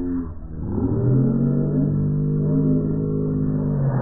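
A cartoon voice clip played back heavily slowed and pitched far down, stretched into a long, deep, drawn-out tone with slowly gliding overtones.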